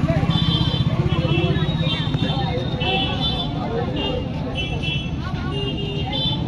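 Busy street noise: a motor vehicle's engine running, loudest in the first two or three seconds, under the chatter of a crowd.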